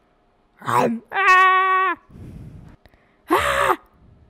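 Human voices acting out dinosaur noises for a fight: a short rough roar, a held high cry of about a second, a quieter low growl, then a loud rough roar near the end.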